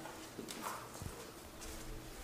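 A few faint footsteps and light knocks on a hard floor, bunched about half a second to a second in.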